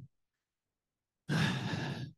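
About a second of near silence, then a man sighs: one breathy exhale lasting under a second.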